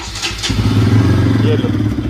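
Bajaj Pulsar RS 200's single-cylinder engine being started with the electric starter, catching about half a second in and then idling steadily.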